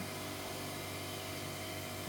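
Steady hiss with a faint low hum, the kitchen's background noise, with no distinct events.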